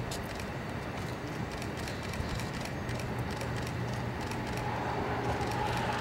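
Steady outdoor background noise with a low hum and scattered faint clicks.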